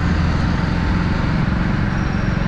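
Motorcycle engine running steadily while riding, heard from on board with road and wind noise.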